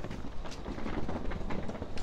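Footsteps and rolling suitcase wheels on a tiled floor: a steady rumble with small irregular knocks.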